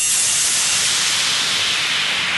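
White-noise hiss effect in a break of an electronic fidget house track, with the beat and bass cut out: a steady hiss whose lower part slowly thins so it sounds higher and thinner toward the end.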